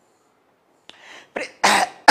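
A man coughing twice in the second half: a short cough, then a louder one.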